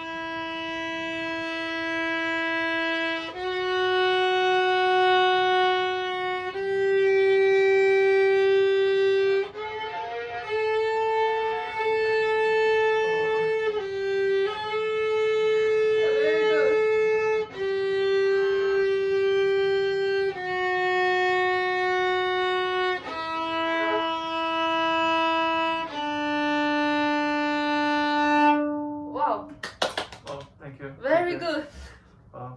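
Violin played with long, slow bow strokes on the D string, one held note every two to four seconds, climbing step by step to a fourth note and then stepping back down to the open D string. A beginner's first scale notes.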